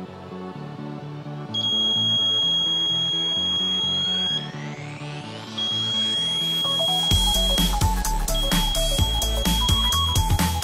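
Piezo buzzer of an Arduino flame-detector circuit sounding a steady high-pitched tone, on for a few seconds, off, then on again twice. Each stretch of tone is the sensor seeing the flame of a lit match and setting off the alarm. Background music plays throughout and gets louder with a beat about seven seconds in.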